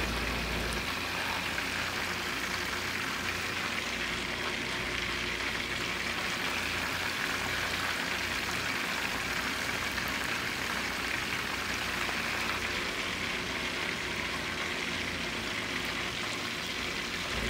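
Chicken wings deep-frying in hot oil in a mesh fry basket: a steady sizzle.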